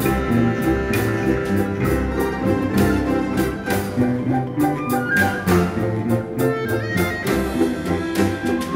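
Balalaika-contrabass playing plucked bass notes with a Russian folk-instrument ensemble of domras and balalaikas, over brisk, rhythmic accompaniment with percussion hits.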